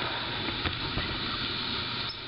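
Steady hiss with a couple of faint clicks, from a camcorder being handled and repositioned.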